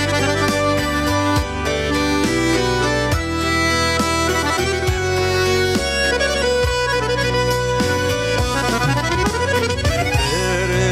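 Stage pop music in a Tatar folk-pop style: an instrumental introduction with a reedy, accordion-like melody over bass and a steady drum beat. A male voice comes in during the second half.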